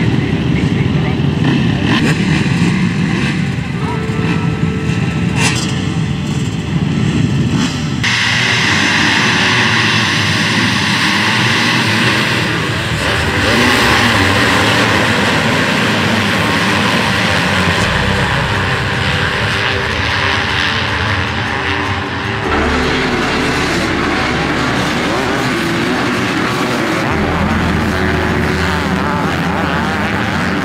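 A pack of motocross bikes at race pace, engines revving hard. The first stretch is lower and more rumbling; about eight seconds in the sound turns suddenly brighter and fuller, and it changes abruptly twice more later on.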